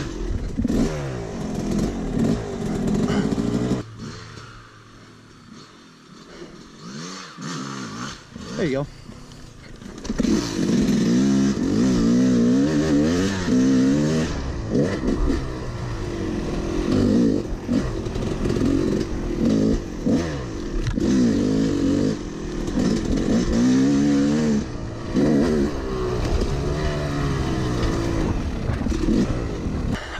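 Two-stroke Yamaha YZ250 dirt bike engine heard from the rider's helmet, revving up and down as it is ridden along a trail. About four seconds in it drops to a low idle or coast for several seconds. From about ten seconds it pulls hard again in repeated rising and falling revs through the throttle and gears.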